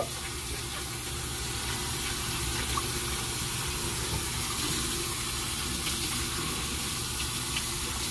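Bathroom sink faucet running steadily, the stream splashing over a silicone body scrubber and hands as it is rinsed and into the basin.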